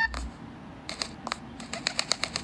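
A short rising chirp and a low thump right at the start, then a run of light, sharp clicks from about a second in that comes faster near the end.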